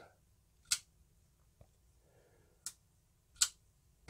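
Sharp metallic clicks from a QSP Penguin folding knife as its blade is worked open and shut by hand: one about a second in, a faint tick, then two more near the end.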